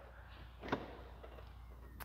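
A single faint click about two-thirds of a second in, over quiet room tone: the trunk latch of a Chevrolet Camaro convertible releasing as the trunk lid is opened.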